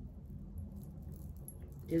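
Bracelets jingling faintly on a moving wrist over a low steady hum, with a voice starting a word at the very end.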